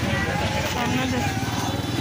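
Busy street ambience: a motor vehicle engine running steadily, with people's voices in the background.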